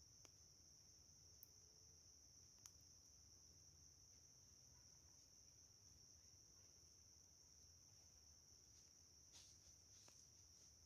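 Near silence, with a faint, steady high-pitched insect drone and a few faint ticks.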